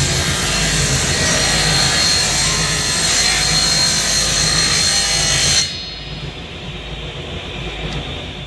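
Table saw ripping a sheet of quarter-inch plywood, the blade's loud cutting noise over the steady hum of the saw motor. The cut ends about five and a half seconds in, and the saw then runs on freely.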